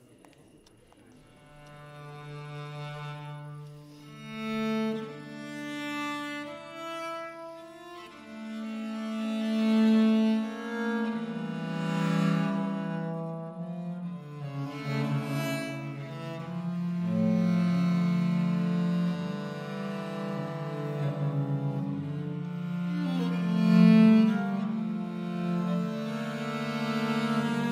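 Two viols da gamba playing a slow duet of long bowed notes in the low register. They enter softly a second or so in and swell gradually.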